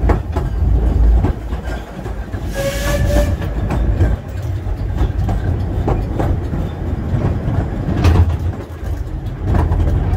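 Steam train carriage running along the track: a steady low rumble with irregular clicks from the wheels and rails. About two and a half seconds in comes a brief hiss with a short high tone.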